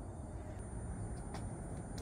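Quiet outdoor background: a low steady rumble, with one faint click a little over a second in.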